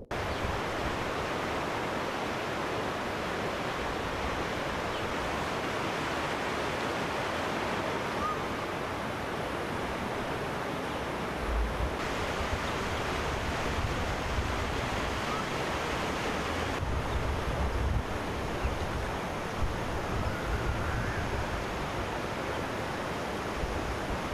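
Fast-flowing floodwater rushing steadily, with low gusts of wind buffeting the microphone now and then.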